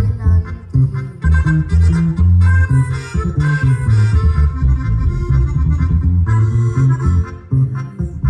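Live Mexican grupera band music led by accordion over a heavy, rhythmic bass line, with a boy singing into a microphone.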